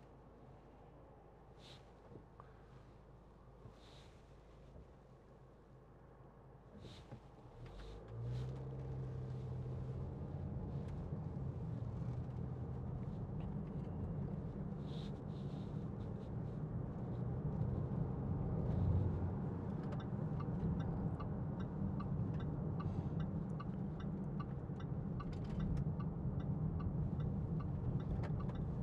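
Cabin sound of a 2015 Range Rover Evoque's 2.0-litre TD4 four-cylinder diesel: quiet at first, then about eight seconds in the engine note swells as the car pulls away hard, its pitch stepping as the nine-speed automatic changes up, with steady road noise underneath.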